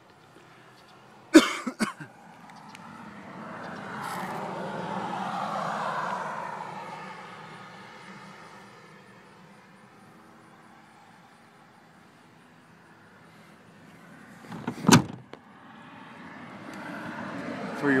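Knocks from the interior of a pickup cab being handled: two sharp knocks about a second and a half in and one loud knock near the end. In between, a vehicle passing outside swells and fades.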